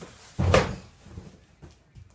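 A single dull thump about half a second in, followed by a few faint knocks.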